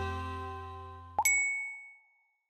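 The last chord of the closing theme music fades out. About a second in, a single bright chime rings and dies away, a ding that ends the outro jingle.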